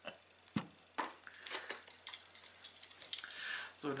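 Potatoes and kitchenware being handled on a table: a few separate knocks, then from about a second in a quicker run of small clicks, clinks and rattles.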